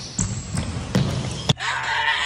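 Basketball dribbled on a hardwood gym floor: four bounces about half a second apart. A pitched sound with wavering lines follows the last bounce.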